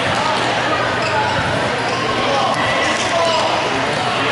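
Game noise of an indoor futsal match in a reverberant sports hall: players' and spectators' voices calling, with the futsal ball being kicked and bouncing on the wooden court floor.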